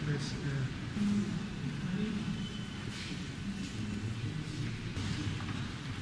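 Low, indistinct murmur of voices inside a large church.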